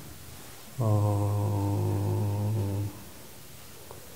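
A man's low, steady hum held for about two seconds, starting about a second in, while he checks a column total.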